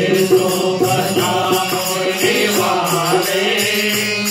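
A group of people singing a Hindu devotional bhajan together in unison, accompanied by small hand shakers rattling in steady rhythm.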